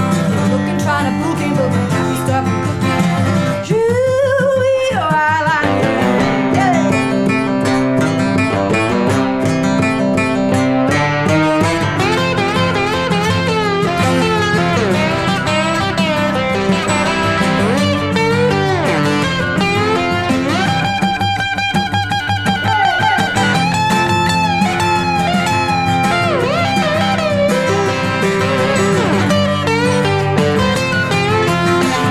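Instrumental break of a country song: an acoustic guitar strums the rhythm while a lap steel guitar played with a slide bar takes the lead, its notes gliding up and down between pitches.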